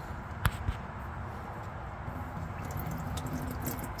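Warm engine oil running out of a mower's oil drain hose in a steady stream, with a short click about half a second in.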